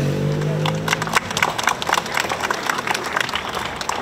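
Scattered hand clapping from a small crowd, sharp separate claps rather than a dense roar. A steady held tone sounds at the start and stops about a second in, just as the clapping picks up.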